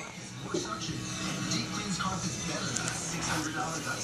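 A television playing in the background: voices with music under them.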